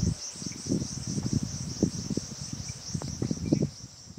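A steady, high-pitched, pulsing chorus of insects, with irregular low thuds and rustling close to the microphone underneath, loudest right at the start.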